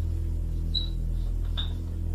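Steady low electrical hum, with a few faint short high squeaks from writing, about three-quarters of a second in and again near the end.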